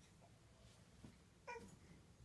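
A domestic cat gives one short meow about a second and a half in, against near silence.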